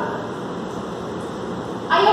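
Steady background room noise, an even hiss with no distinct event, in a pause between spoken phrases.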